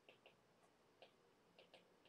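Near silence with about five faint, light clicks at irregular moments: a stylus tapping and touching down on a tablet screen while handwriting.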